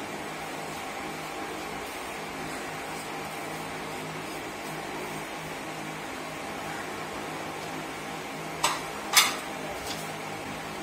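A steady background hum, with flour being emptied from a ceramic bowl into a steel sieve. Near the end come two sharp knocks about half a second apart, then a fainter one, as the bowl is tapped against the sieve.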